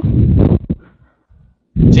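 Low, muffled rumbling from a poorly working computer microphone as it is being adjusted, in two bursts with a silent gap between. A muffled "sí" comes through near the end.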